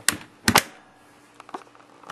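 Chrome latch handle of an old refrigerator door being worked by hand as the door is shut: two sharp metal clacks about half a second apart, then a few lighter clicks near the end.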